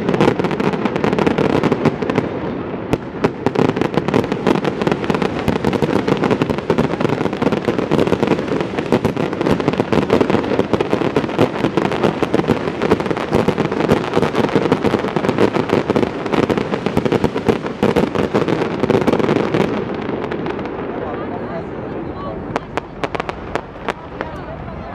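Fireworks display: a dense, continuous run of cracks and bangs from bursting shells, thinning out about twenty seconds in to a few scattered pops.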